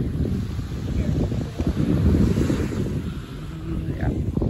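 Wind buffeting the phone's microphone in an uneven low rumble, with small waves washing onto the sand beneath it; the wash swells about two seconds in.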